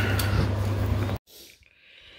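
A steady low hum with background noise that cuts off abruptly about a second in, followed by faint room tone.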